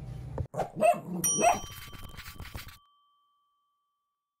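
A dog gives two short barks, and a bright bell ding about a second in rings on briefly.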